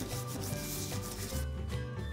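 Wax crayon rubbed back and forth over paper laid on a leaf, on a wooden tabletop: quick, repeated scratchy strokes, softer in the second half, over quiet background music.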